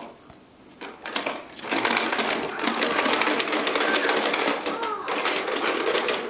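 Toddler's plastic toy push lawn mower clattering with rapid clicks as it is pushed along the floor, starting about two seconds in.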